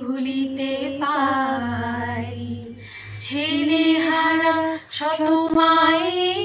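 Women singing a slow song in Bengali, holding long notes, with a brief break for breath about five seconds in.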